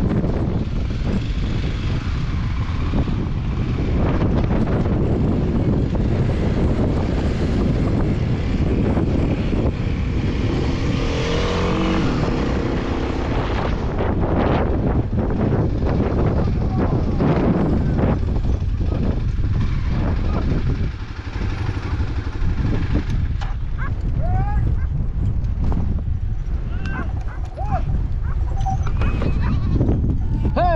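Motorcycle engine and wind buffeting on the rider's camera while riding a gravel track. In the last several seconds the engine quiets and goats in a herd bleat several times.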